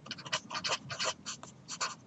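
Marker pen writing on paper: a quick, uneven run of short scratchy strokes, about five a second, as handwritten symbols of an equation are drawn.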